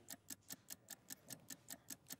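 Faint, rapid ticking of a countdown-clock sound effect, about five even ticks a second, marking the time running down on a timed offer.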